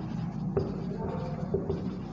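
Marker pen writing on a board: soft scratching strokes, with two short sharp strokes about half a second and a second and a half in.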